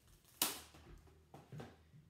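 Plastic cling wrap torn off against the cutting edge of its box: one sharp snap about half a second in, followed by a couple of fainter crinkles and taps.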